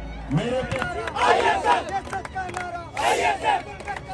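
A crowd of students shouting, with many voices overlapping and louder surges of shouting about a second in and again about three seconds in.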